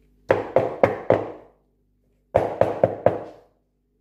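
A metal colander knocked against the bowl to shake the last of the curds off it: two quick runs of four sharp, ringing knocks, the second about two seconds after the first.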